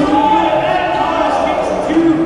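A man's voice over a public address system in a large gymnasium, the words not made out.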